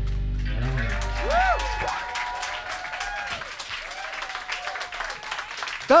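A live rock band's electric guitars and bass ring out on a final chord that fades away about two seconds in, as a small audience breaks into applause and cheering that carries on.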